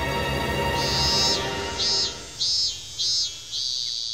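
Background music fading out under a high insect buzz in about five short pulses, a cartoon sound effect for a hot summer day.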